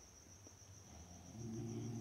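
Quiet room tone with a faint, steady high-pitched insect-like trill in the background; a low hum joins in near the end.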